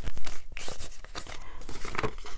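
Paper dollar bills and a paper cash envelope rustling and crinkling as they are handled, a quick run of crisp crackles, loudest just after the start.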